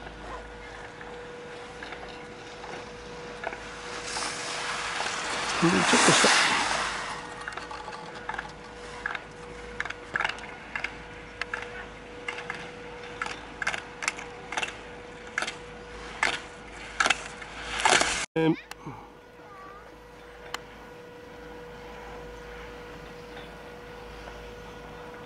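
Skis on snow swelling to a loud hiss about six seconds in, then a regular series of sharp clacks, about one a second, as a ski racer strikes slalom gates through the course. The sound cuts off abruptly near the end.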